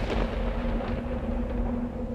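Dramatic background score for a TV serial: a low, steady rumble under one held drone note.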